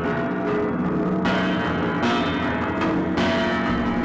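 Strings of a piano stripped down to its strings and soundboard, struck and left ringing, many tones sounding together, with fresh strikes about a second in and again about three seconds in.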